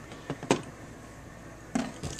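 A few light clicks, the sharpest about half a second in, over faint room hum while hand tools are being handled.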